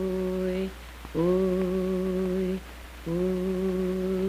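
Wordless singing on a film soundtrack: a single voice holding one low note in long phrases of about a second and a half, each starting with a slight upward slide, with short breaks between them.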